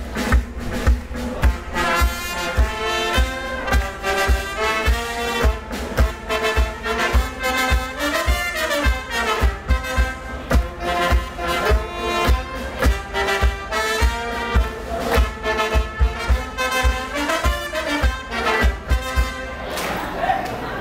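Live brass band with saxophone and drums playing a tune over a steady beat of about two thumps a second.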